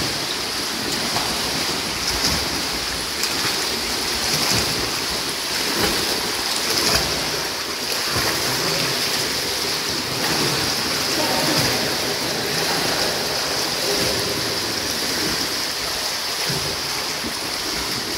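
Continuous splashing and churning water from a swimmer's arm strokes and kicks in an indoor pool, over a steady hiss of pool-hall noise.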